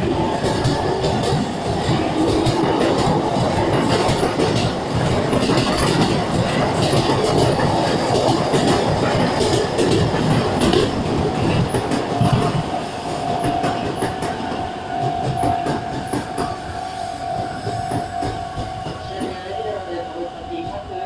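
Sotetsu 11000 series electric train pulling out of a station and gathering speed, its cars rumbling and wheels clattering past close by. The sound eases off over the last few seconds as the train leaves. A steady high tone joins in about two-thirds of the way through.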